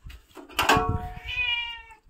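A cat meowing: one long, steady meow lasting about a second and a half.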